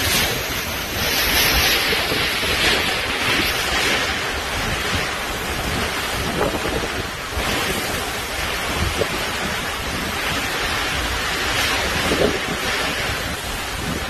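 Super typhoon wind and driving rain: a loud, continuous rush that gusts stronger and weaker every second or two, with the wind buffeting the microphone.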